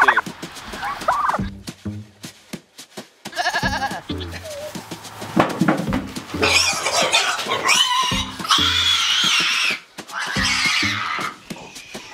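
A piglet squealing loudly in three long, wavering cries as it is chased and grabbed, the usual reaction of a pig to being caught. Background music runs underneath.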